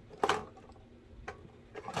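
Plastic toy toaster's mechanism giving one sharp clack about a quarter second in, then a single faint click about a second later.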